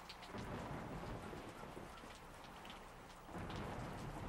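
Faint rain falling, with scattered drop patter and two low rumbles of thunder, the first just after the start and the second near the end.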